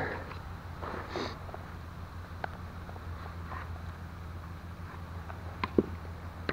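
Quiet handling sounds of mushroom picking in forest leaf litter: a soft rustle about a second in and a few light clicks, over a low steady hum.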